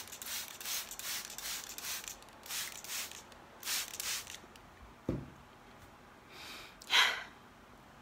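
A handheld trigger spray bottle misting plants in a rapid run of short squirts, several a second, for about the first four seconds. A soft thump follows about five seconds in, and a short rush of noise comes about seven seconds in.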